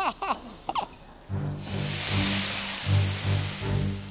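A woman laughing briefly. Then, about a second in, background music comes in with low held notes that change every half second or so and a hiss that swells up and fades.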